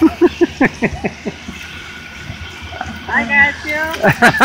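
A person laughing in a quick run of short bursts, then a few spoken words. There is only faint background noise in the pause between.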